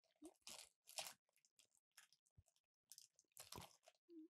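Near silence, broken by a few faint, short crackles at irregular moments, close to a microphone.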